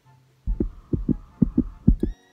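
A run of about seven soft, dull, low thumps at uneven spacing, starting about half a second in.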